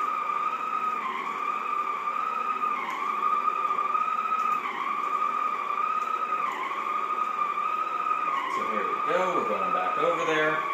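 Shark Sonic Duo floor polisher running on setting one with a steady high whine. The pitch dips briefly about every two seconds as the polish-soaked pad is worked back and forth over the hardwood floor.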